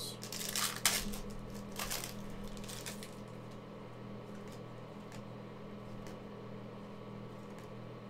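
Foil wrapper of a trading-card pack crinkling and tearing open in a few short bursts in the first three seconds, then quieter handling of the cards over a steady low hum.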